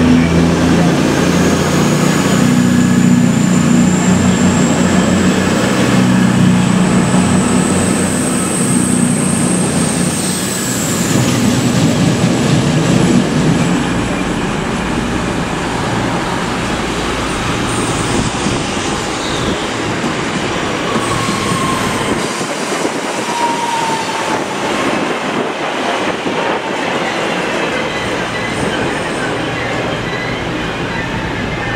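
A CrossCountry Voyager diesel multiple unit running past close by, its underfloor diesel engines loud under a slowly rising high whine; it fades after about twelve seconds. Then a Northern Class 323 electric multiple unit moves through the platform with a lighter rumble of wheels on rail and a brief falling electric whine.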